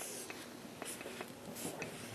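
Marker writing on a paper flip-chart pad: several short, faint strokes of the tip across the paper.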